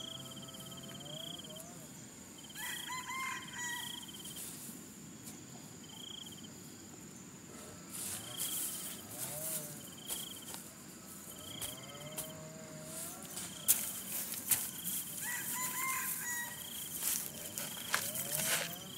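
An insect chirping steadily: short, high, buzzing pulses about once a second. Now and then a bird calls with a rising and falling note. From about halfway there are scrapes and knocks of a hand hoe chopping burnt straw stubble and soil, loudest about three-quarters of the way in.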